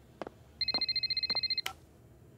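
Mobile phone ringing: a rapidly warbling, high electronic ringtone lasting about a second, with a few faint clicks around it.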